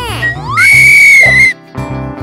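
Background music with a steady beat, over which a cartoon whistle effect plays: a short rising glide, then a loud, high whistle held for about a second before it cuts off.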